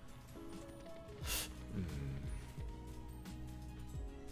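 Online video slot's background music with game sound effects as the reels spin: a short whoosh about a second in and a few low thuds later on.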